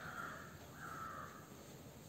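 Two faint bird calls, each about half a second long, one right after the other.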